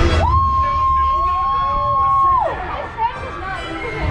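Ride passengers cheering and screaming, one voice holding a long, high cry for about two seconds before it falls away, with a second voice beneath it, over a low rumble.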